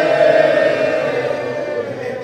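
A congregation of mourners wailing together in lament, a long collective cry of many voices that slowly falls in pitch and fades away.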